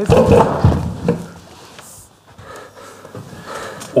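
A man acting out death by poisoning: loud, strained choking groans as he collapses out of an armchair, with thumps of his body hitting the stage floor in the first second. After that it goes much quieter.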